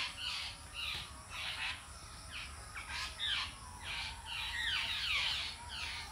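Birds calling over and over, short calls that each fall in pitch, about two or three a second.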